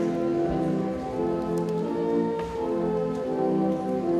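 Church organ playing a slow hymn in sustained chords that change about once a second.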